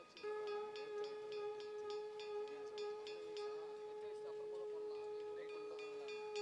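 Background music: a single held drone note with a quick, regular pattern of short high chiming notes over it. The high notes thin out about midway, then return.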